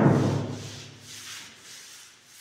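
Paint roller on an extension pole rolling paint onto a wall, a soft rasp with each stroke. Right at the start a loud knock, with a low ringing hum that fades over about a second.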